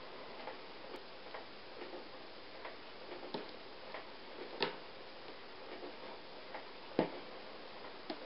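Faint, irregular clicks and taps from a plastic knitting loom being worked by hand as loops are lifted over its pegs, with a few sharper clicks, the loudest about seven seconds in.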